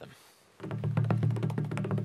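African double-headed drum played by hand in a quick, even run of strikes that starts about half a second in, over a low steady hum.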